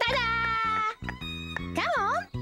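Bouncy children's cartoon music with a steady bass line, carrying a high, wordless, voice-like melody: one long held note that sags slightly in pitch, then a quick wavering up-and-down note near the end.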